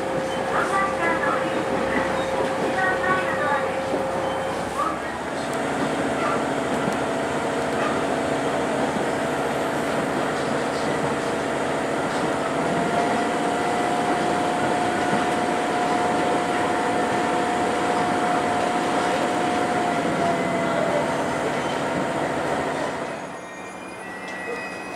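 Railcar running along the line, heard from inside the passenger cabin: a steady rolling rail noise with a held tone that rises slightly about halfway through. Near the end the sound drops away sharply as the train comes to a stop at a station.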